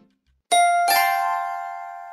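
Electronic two-note ding-dong chime, the second note following the first by under half a second, both ringing and fading away over about two seconds: the quiz's correct-answer sound.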